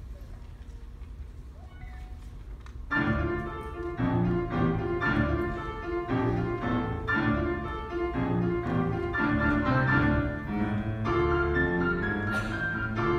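A grand piano starts playing about three seconds in, after a short stretch of quiet room noise, and then goes on steadily with a run of notes and chords.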